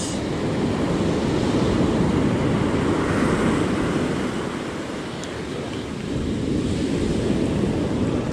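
Ocean surf breaking and washing up the beach in a steady rush, easing off a little midway and building again.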